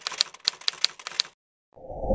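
Typewriter keystroke sound effect: a quick run of about seven sharp clicks over a second and a half. It stops, and a low swell begins just before the end.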